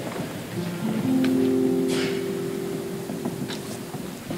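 Soft worship-band music: sustained chord notes come in about a second in and are held, with electric bass underneath. A light rustle and a few faint clicks sit beneath it.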